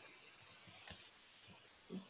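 A few faint clicks of computer keyboard keys being typed, about a second in and near the end, in near silence.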